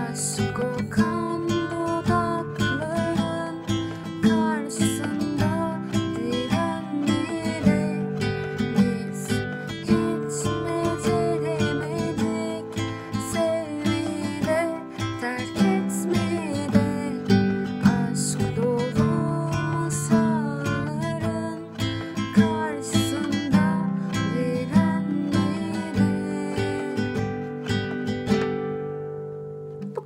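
Acoustic guitar strummed slowly in a down-up-up pattern, two strums per chord, through a Dm–Am–C–G progression, with a woman singing along. Near the end a last chord rings and fades away.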